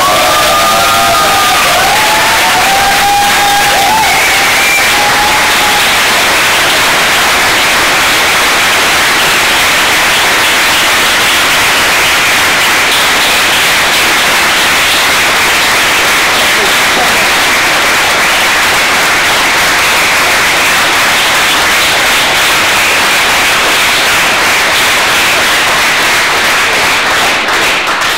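A room full of people applauding steadily for nearly half a minute, with whoops and cheers over the clapping in the first few seconds. The clapping dies away near the end.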